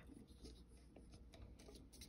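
Near silence: faint small clicks and rubbing from hands handling a clear plastic ornament ball.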